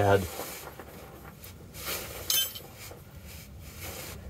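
Quiet handling of metal tools, with one short ringing clink about two and a half seconds in as the steel caging bolt and box-end wrench knock together.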